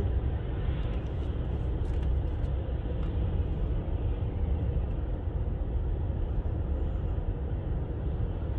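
Steady low rumble of a taxi driving on a wet road, heard from inside the cabin: engine and tyre noise.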